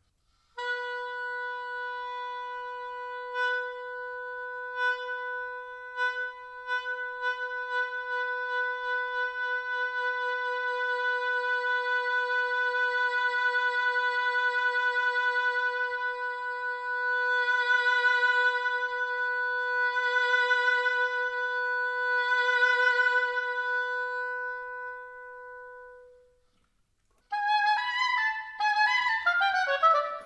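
An oboe holds one long note for about 25 seconds, with a few brief accents at first. Then a vibrato grows in and the note swells louder and softer three times, testing whether the vibrato follows the crescendo and diminuendo, before it fades away. After a short silence, a quick descending run of notes follows near the end.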